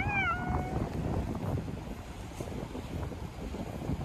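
A cat gives one short meow right at the start, rising then falling in pitch.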